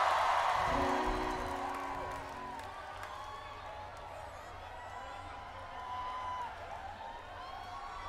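Large outdoor festival crowd cheering and whooping, dying down over the first few seconds, with a couple of steady held notes from the stage instruments about a second in. Scattered whoops carry on after.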